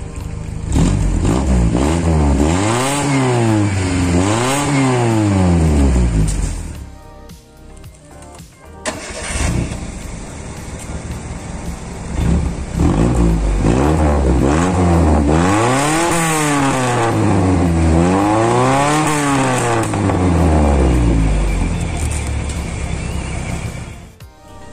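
Ford Laser sedan's engine revved in repeated throttle blips through its modified exhaust, with a new front resonator and a twin-loop tailpipe, giving a deeper, bassy note. It revs in two bursts and drops back to idle for a few seconds between them.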